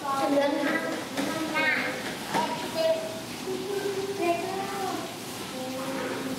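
Young children's voices chattering in a classroom, several talking at once and not as one clear speaker.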